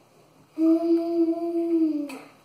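A person humming one long, steady note, starting about half a second in and dipping slightly in pitch as it ends.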